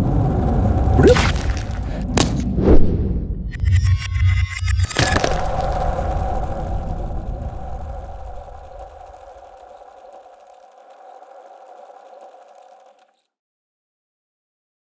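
Outro sound design for an animated end card: a low rumble with whooshes and a few sharp hits, then a sustained chord that fades away over several seconds and stops.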